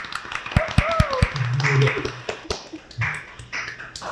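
A small group of people clapping their hands, uneven claps thinning out in the second half, with voices and laughter among them.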